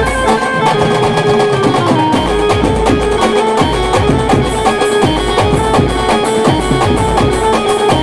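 A live Maharashtrian brass-and-keyboard band plays a Khandeshi pavri dance tune through the truck's loudspeakers. The melody runs in held notes over dense drumming and a steady, deep bass beat.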